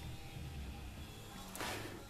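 Windshield-wiper-motor power feed on a Sieg X2 mini mill running at a very slow creep, a faint steady hum.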